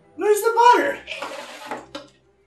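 A man's voice gives a short exclamation with a gliding pitch, then trails into about a second of breathy noise as he laughs.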